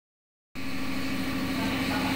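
Steady mechanical hum and whir of room machinery, one low steady tone under a broad hiss, starting about half a second in.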